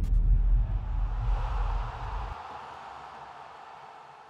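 Sound effect for an animated title card: a deep bass boom ringing on and cutting off about two seconds in, under a hissing shimmer that slowly fades away.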